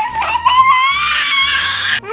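A young child's long, high-pitched squeal, rising at first and then held for about a second and a half.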